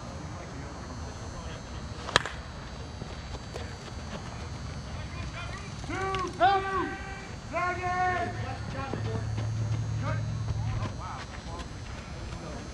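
A softball bat striking the ball with one sharp crack about two seconds in, followed a few seconds later by players shouting.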